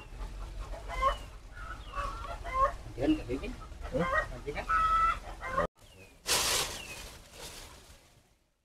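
Chickens clucking in short, repeated calls, mixed with voices. The sound cuts off abruptly about five and a half seconds in and is followed by a brief hiss-like rustle.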